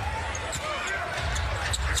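Arena crowd noise during live basketball play, with a ball bouncing on the hardwood court.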